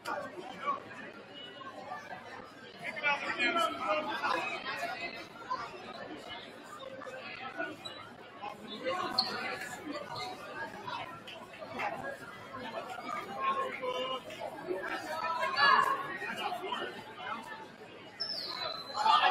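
Indistinct chatter of spectators in a crowded school gymnasium: many overlapping voices, none clear.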